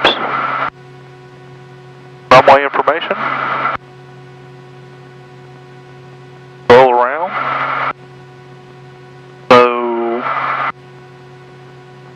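Four brief aviation radio transmissions, each a second or so long, switching on and off abruptly over the headset audio, with a steady low hum between them.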